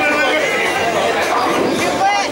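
Indistinct chatter of many overlapping voices in a bowling alley, steady throughout.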